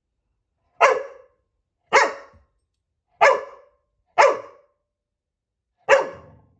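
Black Labrador puppy barking at her own reflection in glass fireplace doors: five sharp barks, the first four about a second apart, the last after a slightly longer pause near the end.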